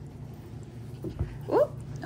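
A young puppy gives one short, high whimper near the end, shortly after a soft thud, over a steady low hum.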